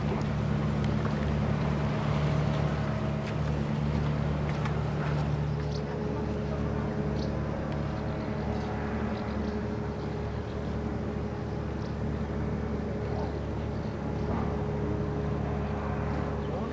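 A steady low mechanical hum with no change in pitch or level, joined about six seconds in by a thin faint tone.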